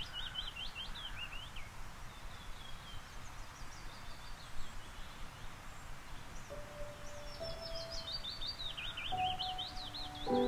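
A bird sings rapid, falling trills of high notes, once at the start and again in the last few seconds, over steady outdoor background noise. Soft music with long held notes fades in about two-thirds of the way through.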